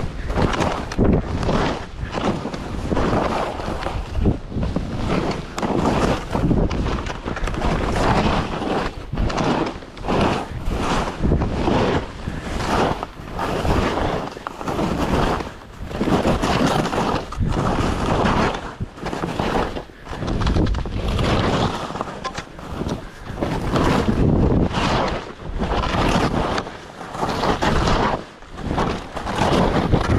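Skis hissing through fresh powder snow, with wind rushing over the microphone; the noise rises and falls unevenly, every second or so.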